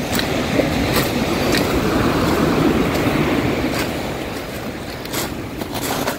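Ocean surf washing up a pebble beach, swelling over the first few seconds and then fading, with a few sharp crunches of footsteps on the stones.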